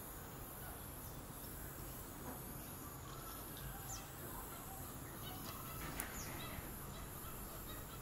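Faint wetland field ambience: a steady low hiss with a few brief, faint bird calls, one about four seconds in and another near six seconds.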